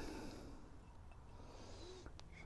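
Faint breathing of a man puffing on a tobacco pipe, a soft hiss that fades about half a second in and returns faintly near the end.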